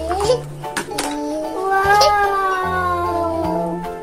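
A long meow near the middle, falling slowly in pitch, over background music with a steady bass line.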